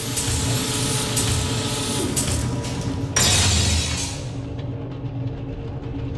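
Produced transition sound effects: a rushing whoosh swells in over a low steady drone with a few held tones. About three seconds in a second, louder whoosh hits suddenly and fades out over a second or so.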